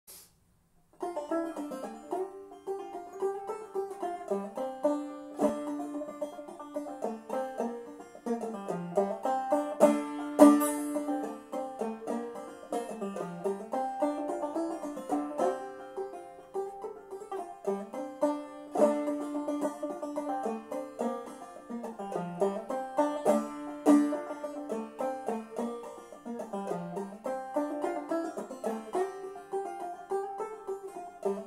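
Five-string banjo played solo in clawhammer style, an old-time tune in fDGCD tuning, with a steady rhythm of bright plucked notes that starts about a second in.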